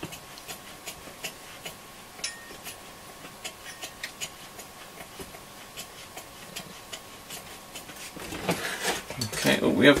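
Faint, irregular small clicks and metallic taps, a few a second, as hands handle the opened metal chassis of a Hacker Super Sovereign RP75 transistor radio, over a faint steady high tone. A voice begins near the end.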